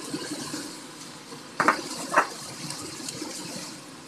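Chicken and diced radish sizzling in hot oil in a wok, a steady hiss that eases a little. Two short sharp sounds stand out about a second and a half and two seconds in.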